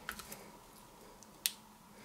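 Faint clicks of a tiny magnet being handled and pressed into a superglued hole in a plywood disc, with one sharper click about one and a half seconds in.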